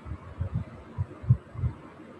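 A pencil drawing a line on paper laid on a cutting mat, heard as soft, irregular low thuds, about six in two seconds, with no clear scratch of lead.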